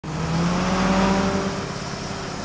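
Vehicle engine sound effect for a school bus driving in: a steady engine hum over a hiss, easing slightly near the end.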